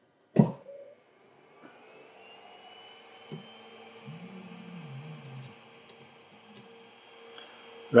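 Ender-3 3D printer's cooling fans spinning up on power-on: a faint whine that rises in pitch for about a second and then holds steady over a low electrical hum. A few faint clicks come near the end.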